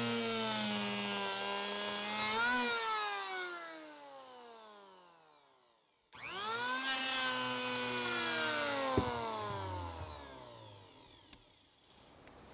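Handheld electric power planer, its blades ground to a curve for backing out planks, making test passes on a wooden block. It runs with a steady whine, is switched off and spins down with falling pitch, then starts again about halfway with a quick rising whine, runs, and spins down once more near the end.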